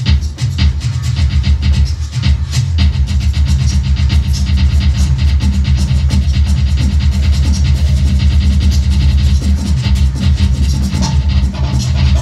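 Large acoustic drum kit played fast and hard: a quick, even stream of kick-drum strokes under cymbal and tom hits, with no pause.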